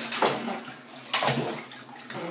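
Bathwater splashing as a toddler moves his hands in a bubble bath: a small splash just after the start and a louder one about a second in.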